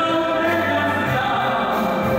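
Male vocalist singing live into a handheld microphone over instrumental accompaniment, holding long sustained notes.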